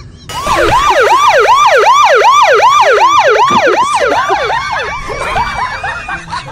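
A siren in a fast yelp pattern, its pitch sweeping up and down about two and a half times a second. It sets in just after the start and fades over the last second or two.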